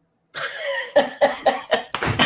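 A person laughing hard in rapid repeated bursts, about four a second, starting about a third of a second in.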